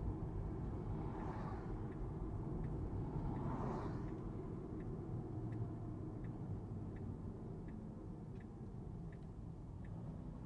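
Road and tyre noise heard inside a Tesla Model 3 Performance's cabin: a low steady rumble that fades as the car slows for a turn. A turn signal ticks faintly about every two-thirds of a second.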